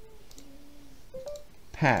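A few faint computer mouse clicks over low room noise, followed by a man's voice starting near the end.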